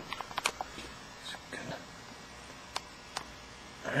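Handling noise from a handheld camera: a few faint clicks and light taps, several in the first half second and two sharper ones past the middle, over quiet room tone.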